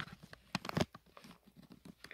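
A few short, quiet clicks and crackles, mostly about half a second in, from a phone being handled and swung around.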